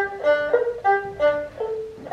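Erhu playing a quick melodic passage of short, separate bowed notes that change pitch about three times a second.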